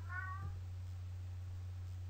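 A short high-pitched call in the first half second, over a steady low hum.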